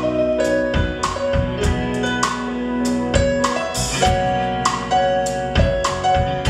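Live band playing an instrumental passage with no singing: electric guitar and keyboard-like chords over a drum kit, with drum hits marking the beat.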